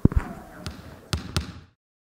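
A basketball bouncing several times on a sports-hall floor, each bounce echoing in the large hall, until the sound cuts off abruptly.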